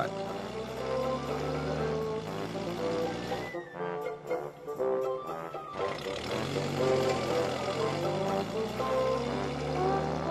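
Background score music: a melody of held notes over a steady low part. The low part drops out for a couple of seconds midway, then returns.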